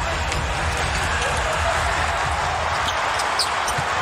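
Arena crowd noise during live play, with a basketball being dribbled on the hardwood court.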